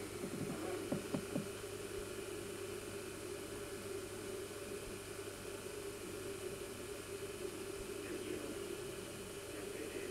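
Steady low hum with an even hiss, the background noise of an old home-video recording, with a few faint taps in the first second and a half.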